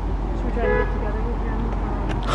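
Street ambience: a steady low rumble of traffic, with a brief faint pitched sound about half a second in.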